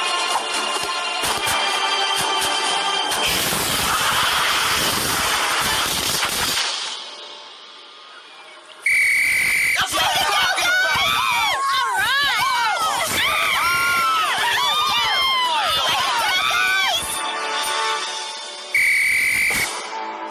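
Cartoon soundtrack of a dodgeball game: music, then a loud rush of noise about three seconds in. A short steady sports-whistle blast comes about nine seconds in, followed by a stretch of cartoon characters yelling and screaming, and a second whistle blast near the end.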